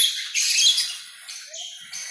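Green-cheeked conures mating, giving harsh, scratchy chirps and squawks in short bursts. The loudest come right at the start and again about half a second in, with a shorter one past the middle.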